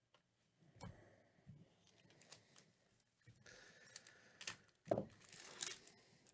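Football trading cards being handled: faint scattered clicks and rustling as cards slide over one another, with louder rustles near the end.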